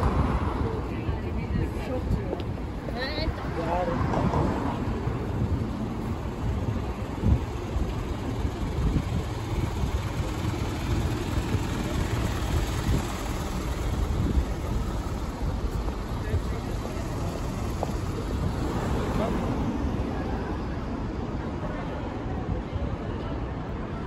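City street traffic: cars and buses passing on a multi-lane road, a steady low rumble of engines and tyres with wind on the microphone. Passers-by talk briefly a few seconds in and again near the end.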